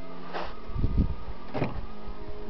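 A few low thumps and short rustling scuffs from a person moving right beside the microphone, over a faint steady hum.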